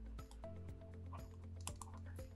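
Faint, scattered clicks and taps of a stylus on a tablet screen as words are handwritten, over a faint steady low hum.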